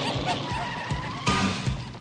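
Cartoon sound effect for a cloud of dust kicked up by a character speeding off: a noisy rush that fades toward the end, over background music.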